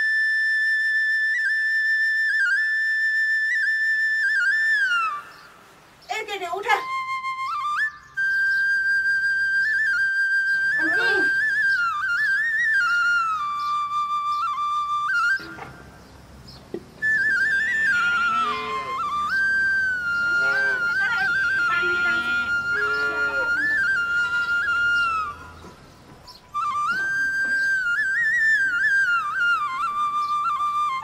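Background music: a solo flute plays a slow melody of long held notes with quick turns, in phrases with short gaps between them.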